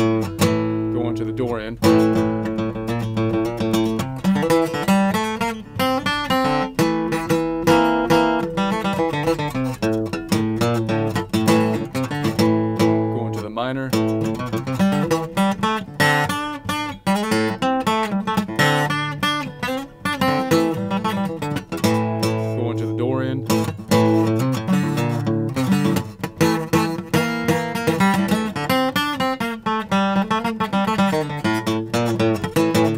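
Steel-string acoustic guitar played continuously, a steady stream of picked notes running up and down a Phrygian-mode pattern.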